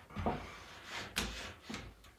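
Spline roller pressing spline into the metal groove of a window-screen frame: faint rubbing and rolling with a few small knocks, the sharpest just over a second in.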